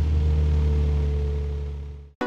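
Nissan 350Z's 3.5-litre V6 engine and exhaust holding a steady low drone just after a rev as the car drives by, fading out near the end.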